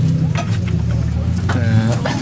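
Land Rover 200Tdi four-cylinder turbo-diesel idling steadily with a low rumble, running after taking water into its intake, its air filter full of water.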